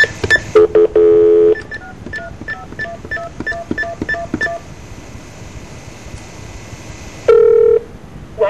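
Telephone touch-tone keypad dialing: a few louder, lower beeps at the start, then a quick run of about ten short dual-tone beeps, and one more low beep near the end.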